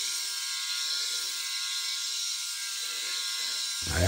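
VeroShave 2.0 rotary-head electric head shaver running steadily as it is drawn over the scalp, a steady high whine over a hiss.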